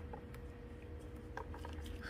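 Quiet room tone with a low hum, and faint small clicks of metal tweezers pulling dry leaves off an echeveria: once just after the start and again about a second and a half in.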